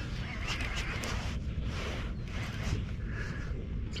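Steady wind and water noise on open water, with a few faint clicks from the handling of a baitcasting reel.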